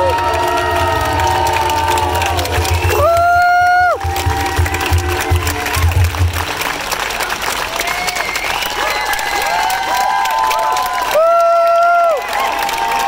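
A ukulele choir with bass strums and sings the last bars of a song; the bass stops about halfway through. The audience then cheers, whoops and applauds. Two loud, steady whistle-like tones, each about a second long, cut through: one a few seconds in and one near the end.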